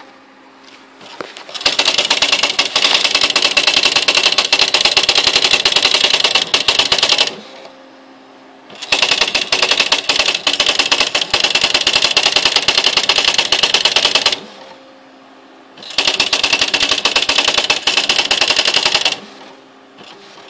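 Smith Corona SL 575 electronic typewriter printing its built-in demonstration text by itself. There are three long runs of rapid print strikes, each a few seconds long, with short pauses between lines in which a faint steady hum is left.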